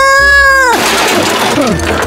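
A cartoon character's high, held cry of alarm, cut off under a second in by a loud, noisy crash of breaking wood.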